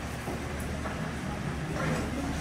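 A steady low rumble of road traffic, with faint voices in the background.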